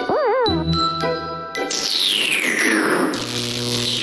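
Children's cartoon music with comic sound effects: a short warbling pitch-bend right at the start, then plinking notes and a long falling whistle-like glide from about two seconds in.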